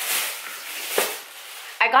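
Rustling as groceries are rummaged through and a jar of instant coffee is lifted out, with one light click about a second in.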